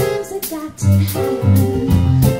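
A live band playing: electric keyboard chords over repeated electric bass notes, with drum kit strikes.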